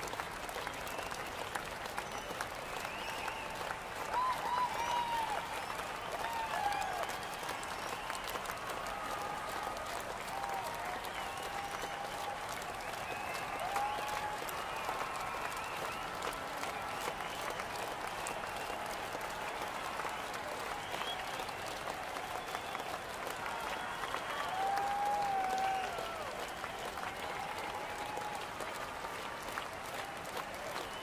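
Large concert crowd applauding and cheering, with individual shouts and screams rising above the clapping now and then. The shouting swells louder about four seconds in and again late on.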